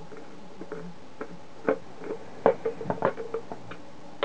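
Small irregular clicks and taps of a screwdriver turning a screw in the plastic case of a Plessey PDRM 82 dosimeter, sparse at first and coming faster in the second half.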